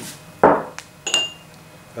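A small clay mortar set down on the worktop with a knock, followed a little later by a small glass bowl clinking with a short ring.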